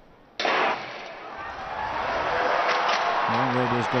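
Starting gun for a sprint hurdles race, a sharp report about half a second in, followed by the stadium crowd's roar building as the hurdlers run.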